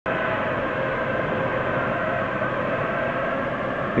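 A steady mechanical drone with several steady tones in it, holding an even level throughout.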